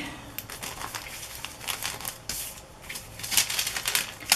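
Clear plastic bags crinkling and rustling as they are handled, with scattered light clicks and crackles, thicker about halfway through and again near the end.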